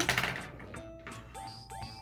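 Soft background music with a few faint held notes, under light rustling of paper being handled.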